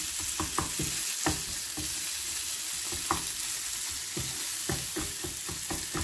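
Tomato chutney sizzling steadily in a nonstick frying pan while a wooden spatula stirs it, with irregular quick scrapes and knocks of the spatula against the pan, several a second.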